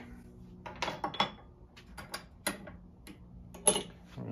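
A series of light clicks and knocks from an adjustable arrow-shafting tool being set and handled, with one sharper knock near the end, the loudest of them.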